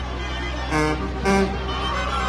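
Street brass band music over a crowd, cut through by two short, loud horn blasts about half a second apart in the middle.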